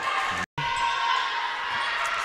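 Sports-hall ambience during a futsal match: a steady murmur of spectators and players' calls echoing in the hall, with a short dropout to silence about half a second in.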